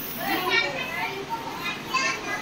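Several people talking in a room, with children's voices among them, quieter than the speech just before.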